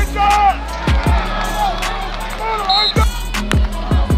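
Background music with heavy bass, occasional sharp drum hits and a sung vocal line gliding up and down.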